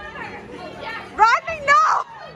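Excited, high-pitched shouts or squeals from people bowling, two short loud ones in the second half, over low chatter.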